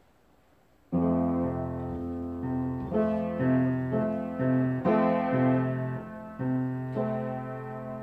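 Piano playing a slow introduction of sustained chords over a steady held bass note, starting about a second in after a brief hush.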